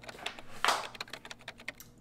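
Computer keyboard typing: an irregular run of quick key clicks, with a denser cluster about two-thirds of a second in.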